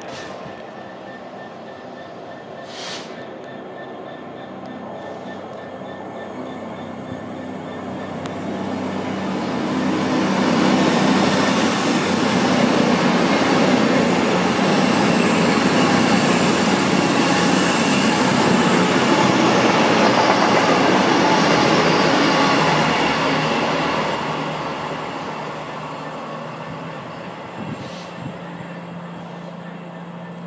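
An Avanti West Coast Class 221 Super Voyager diesel multiple unit comes near with its underfloor diesel engines running, then passes close at speed. For about twelve seconds there is a loud rush of wheels and engines, with a thin high whine in its first few seconds. Then the sound fades away.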